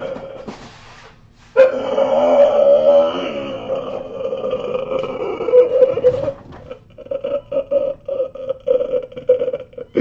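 A man's high, drawn-out wailing cry with a wavering pitch, starting about a second and a half in and lasting several seconds, then breaking into a run of short sobbing cries: an overwrought crying outburst of joy.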